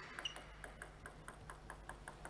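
Plastic table tennis ball bounced over and over on the table before a serve: a quick, even run of faint light pings, about five or six a second.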